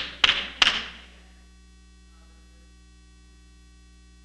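Three sharp hand claps ringing in a large hall within the first second, then a steady electrical mains hum.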